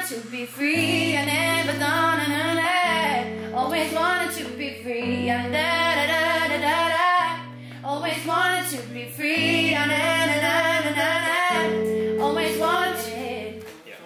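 Music: a woman singing a pop melody over held bass and chord notes that change about every two seconds, fading out at the end.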